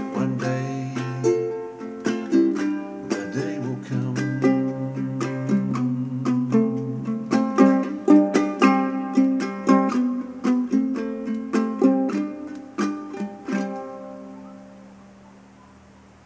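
Solo small acoustic stringed instrument, fingerpicked and strummed, playing the song's closing instrumental. The last chord comes about three-quarters of the way in and is left to ring and fade away.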